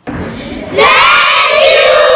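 A large group of schoolchildren shouting and cheering together. A quieter crowd noise comes first, then a loud, sustained shout breaks out just under a second in.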